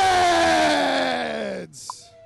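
A man's voice through a microphone and PA, holding out the last word of a wrestling team's introduction in one long call that slides down in pitch and fades out a little before the end.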